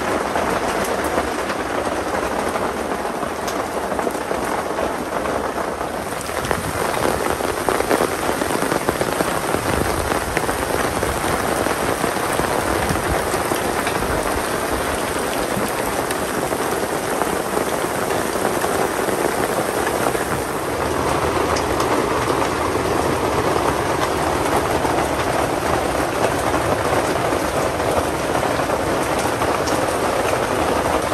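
Steady rain falling on a tent and the forest around it, with no voices; the sound shifts in tone about 6 seconds in and again about 21 seconds in.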